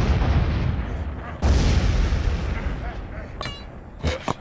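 Crumbling rock and falling rubble: a deep rumbling crash fading away, then a second sudden crash about a second and a half in that dies down slowly. A brief high voice-like squeak comes near the end.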